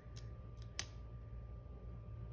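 Hands handling a paper sticker on a planner page: faint small handling sounds with one sharp click a little under a second in, over a steady low hum.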